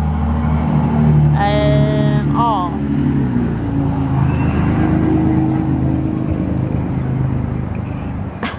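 A motor vehicle's engine running with a steady low rumble, its pitch dropping and settling about three seconds in.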